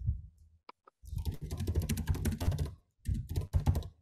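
Computer keyboard being typed on in fast runs of keystrokes: one long run starting about a second in, a short pause, then a second shorter run.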